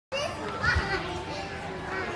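Young children's high voices calling and chattering as they play, with a dull thump a little under a second in.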